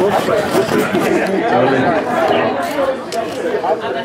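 Several people talking at once, a steady overlapping chatter of voices with no music playing.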